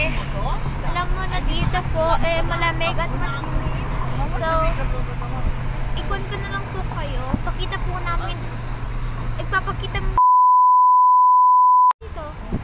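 Voices chattering inside a moving vehicle over the steady low hum of its engine and the road. About ten seconds in, everything cuts to a loud, steady 1 kHz test-tone beep, the tone that goes with TV colour bars, which lasts about two seconds and stops abruptly.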